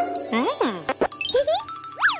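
Light children's cartoon background music with tinkling jingles, over swooping up-and-down cartoon voice sounds with no words.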